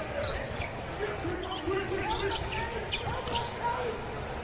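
On-court basketball sounds: a ball being dribbled, sneakers squeaking on the hardwood floor, and players' voices calling out.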